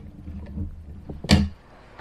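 Low handling noise, then one sharp click about a second and a half in, as the CPU is taken out of the motherboard's LGA 1151 socket.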